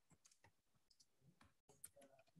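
Faint keystrokes on a computer keyboard as text is typed: irregular clicks, several a second, with one louder click near the end.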